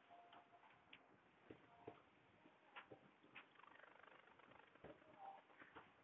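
Near silence, with faint scattered ticks and a few brief faint tones.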